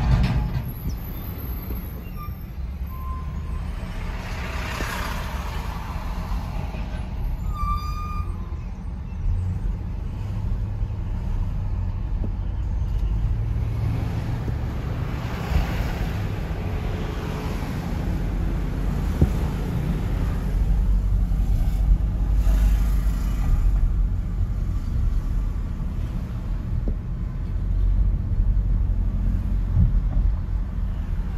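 Car road noise heard from inside the cabin while driving: a steady low rumble of engine and tyres, with a few louder swells of traffic noise as other vehicles pass.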